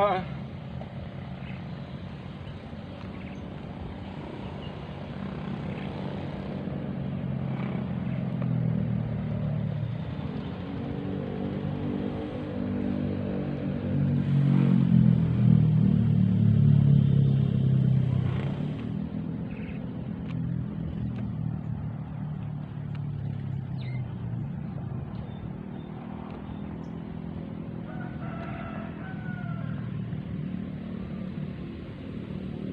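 A motor drones at a low pitch throughout, growing louder for several seconds mid-way and then fading again. Near the end there is a brief high call.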